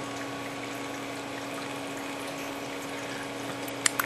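Reef aquarium pump running with water circulating: a steady hum over an even wash of water noise, with a short click just before the end.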